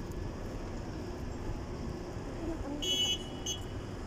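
Steady rumble of road traffic, with two short, high-pitched toots about three seconds in.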